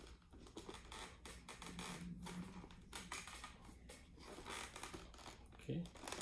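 Faint clicks and rustles of a Scorpion EXO-510 Air full-face motorcycle helmet being handled and turned over in the hands: plastic shell, visor and padding knocking and rubbing.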